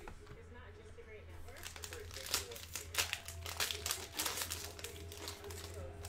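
Plastic cello wrapper of a 2020 Panini Prizm football card pack being torn open and crinkled by hand. It starts quietly, then from about a second and a half in there is a dense run of crackles.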